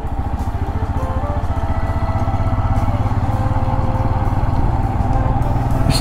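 Royal Enfield Himalayan's single-cylinder engine running on the move, a rapid, even pulsing that grows louder over the first few seconds.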